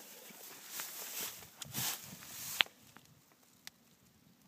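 Faint footsteps crunching through dry grass for about two and a half seconds, ending with a single sharp click, then quiet.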